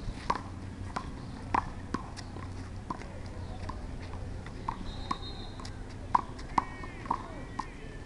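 A small rubber handball struck by bare hands and rebounding off a concrete wall and court during a rally: a dozen or so sharp hollow knocks at irregular intervals, loudest about a second and a half in and around six seconds in.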